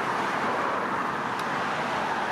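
Steady road noise of car traffic passing on the street, mostly the rush of tyres on the road.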